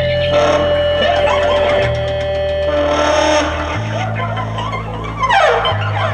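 Live band playing free-form jazz-rock with electric guitar. Long held bass notes change about every two seconds under a sustained higher note, with a run of falling, sliding notes about five seconds in.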